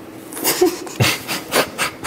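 A person breathing out in short, breathy bursts of laughter after a joke, about five puffs of breath with hardly any voice in them.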